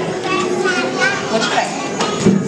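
Many children's voices overlapping, chattering and calling out, with no one voice standing out.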